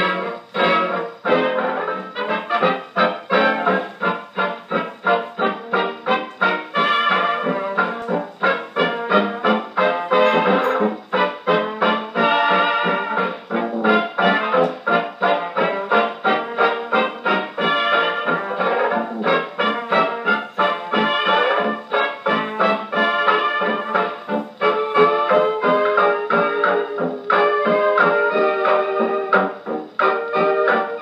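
A worn 1935 78 rpm shellac dance-band jazz record played acoustically on a 1926 Victor Credenza orthophonic Victrola with a soft tone needle: the band plays over a steady dance beat, the sound narrow in range, with no deep bass and little top.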